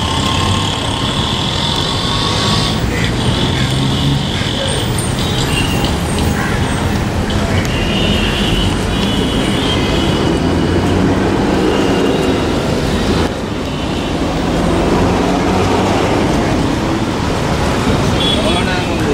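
Steady outdoor din of road traffic mixed with the indistinct chatter of a crowd, with no single voice in front.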